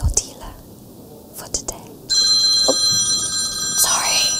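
Brief whispering, then about two seconds in a loud, steady ringing of several pitches at once begins without fading and carries on to the end, with a little whispering over it.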